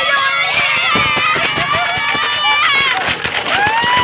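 Several children shouting and whooping together in high, drawn-out yells, with one long held shout near the end and many sharp clicks underneath.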